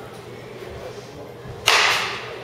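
Baseball bat striking a pitched ball in a batting cage: one sharp crack about one and a half seconds in, trailing off over about half a second.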